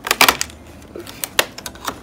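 Sharp clicks and crackles of a Hatchimals advent calendar compartment being opened by hand, its cardboard flap and thin clear plastic tray snapping: a quick cluster at the start, then a few single clicks.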